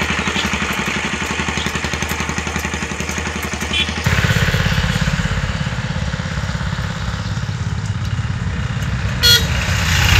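Street traffic: a motor vehicle engine, most likely a motorcycle, running with a fast, even throb that gets louder about four seconds in, and a short horn toot near the end.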